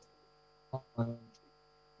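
A man's voice over a video call dropping out mid-sentence: near silence with a faint steady electrical hum, broken by two brief clipped fragments of his voice about a second in. This is the sign of an unstable internet connection.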